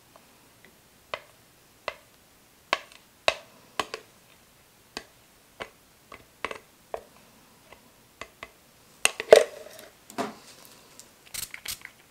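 A clear plastic spoon tapping and scraping against the inside of a plastic measuring jug: a series of sharp, irregular clicks about every half second, with a louder cluster about nine seconds in and a quicker run of clicks near the end.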